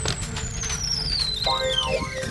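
A long whistle-like tone gliding steadily down in pitch, with a brief cluster of steady tones joining it about three quarters of the way through, over road and wind noise.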